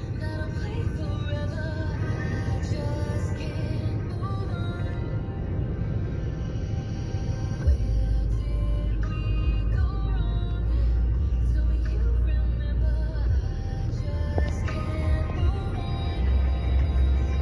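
Music with a clear melody playing over a low vehicle rumble; the rumble grows louder about halfway through.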